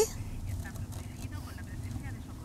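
Steady low rumble of a moving car heard from inside the cabin: engine and road noise.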